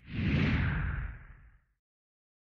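A whoosh sound effect for a logo transition, falling in pitch and fading out after about a second and a half.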